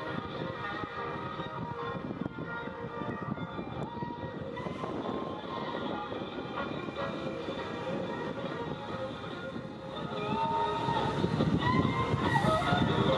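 Engines of a group of Honda police motorcycles running together at low speed in formation, a steady layered drone. It grows louder from about ten seconds in, with a few short rises in engine pitch as the bikes come closer.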